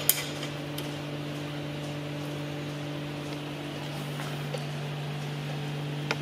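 A steady low hum, with one sharp metallic click at the very start as a nut and washer are done up under a workbench table, and a few faint ticks later on.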